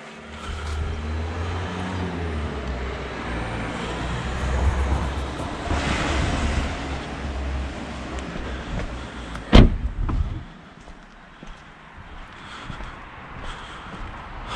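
A car door is slammed shut about nine and a half seconds in, a single sharp bang that is the loudest sound here. Before it come a low steady rumble and rustling as someone moves about and climbs out of the car, and the rumble drops away once the door is shut.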